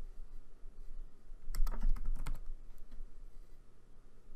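Computer keyboard typing: a quick run of about half a dozen keystrokes midway through, with a couple of lighter taps just after, as a short word is typed.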